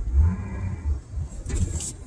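Low rumble of a car's engine and road noise heard from inside the cabin as the car creeps along, with a short hissy noise about one and a half seconds in.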